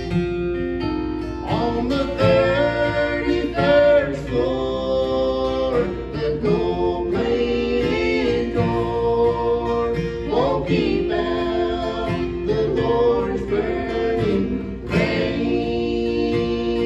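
Live acoustic bluegrass trio: voices singing in harmony over strummed acoustic guitars, a country ballad at a steady tempo.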